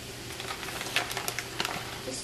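Asparagus sautéing in a hot skillet: a faint steady sizzle with scattered light crackles and ticks, most of them in the second half.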